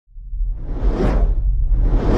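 Intro sound effect: a whoosh swells and fades over a deep, low rumble, peaking about a second in, and a second whoosh builds near the end.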